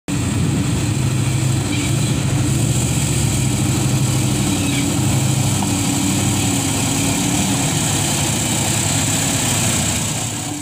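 Heavy diesel engine of a Mitsubishi Fuso tanker truck running at low revs as the truck crawls over rutted mud: a steady, loud drone whose pitch wavers only slightly.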